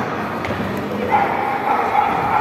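Spectator noise in a sports hall, with one held, fairly high-pitched call from someone in the hall starting about a second in.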